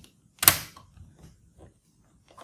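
A sliding plastic release latch on an HP ProBook 6470b's bottom service cover snapping to the unlocked position: one sharp click about half a second in, then a few faint ticks as the fingers work the latches.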